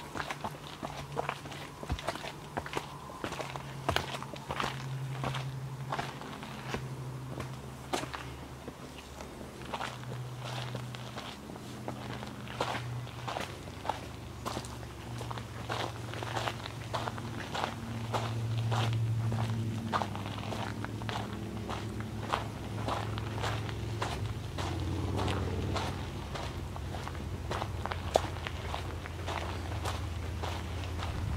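Footsteps of a hiker walking at a steady pace, about two steps a second, up stone steps and on along a dirt forest trail. A low steady hum runs underneath.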